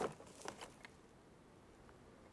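A sharp knock followed by a lighter knock and a faint click within the first second, as a Rowenta steam iron is lifted from its base station.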